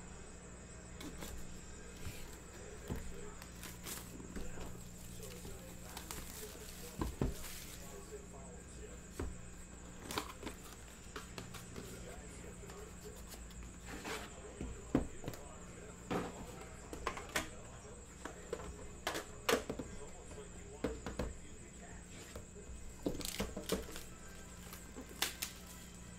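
Hands handling trading-card packaging: cardboard boxes and a metal tin, making scattered light clicks, taps and rustles over a faint steady hum.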